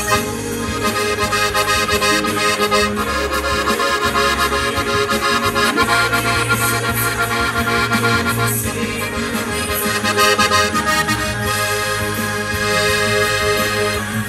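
Rutar diatonic button accordion (Slovenian frajtonarica) playing a melody over sustained chords, with the bass buttons changing every second or so; the playing runs on steadily without a break.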